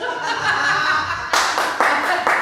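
A run of hand claps, about four a second, starting a little past halfway, over laughing voices.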